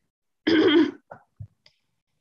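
A woman briefly clears her throat about half a second in, followed by a few faint clicks and a soft low thump.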